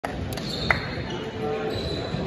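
Echoing gymnasium ambience with indistinct background voices and low thuds, and one sharp knock about two-thirds of a second in.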